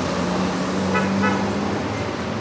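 Street traffic passing with a steady engine drone, and a vehicle horn giving two short toots about a second in.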